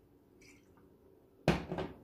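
A single knock about one and a half seconds in, a bottle set down on a countertop, with a short ring after it. Before it there is only faint room sound.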